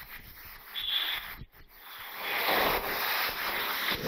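Marker pen rubbing and scratching across a whiteboard as equations are written, with a brief high squeak about a second in and steadier, louder strokes in the second half.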